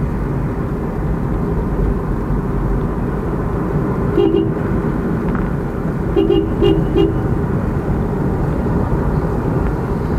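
Steady road and engine rumble heard from inside a moving car, with a vehicle horn sounding once briefly about four seconds in and then in a quick run of short toots around six to seven seconds, as the car overtakes a tanker lorry.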